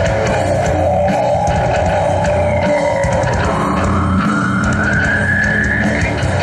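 Live metal band playing loud: guitar, bass guitar and drum kit, with one long tone gliding slowly upward in pitch.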